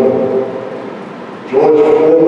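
A man's preaching voice trails off, a lull of about a second follows, then the voice comes back loudly about one and a half seconds in.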